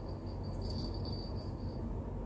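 Faint, high insect chirping that comes and goes, over a low, steady background hum.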